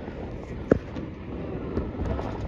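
Wind on the microphone over a steady hum of distant city traffic, with one short thump about a third of the way in.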